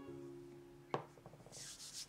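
Background music holds a chord and stops about halfway. Then comes a single sharp knock, a quick run of faint ticks, and a brief high rubbing hiss near the end: handling sounds at a marble pastry board.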